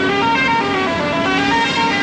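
A melody of quick, stepped pitched notes over a steady low drone.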